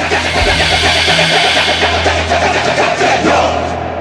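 A loud, harsh woman's scream, rough and noisy rather than clearly pitched, that cuts off suddenly near the end. It sits over a steady low droning horror score.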